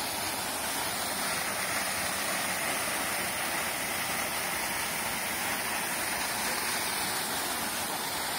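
Steady rush of a mountain waterfall pouring down a rock face into a pool, heard close up.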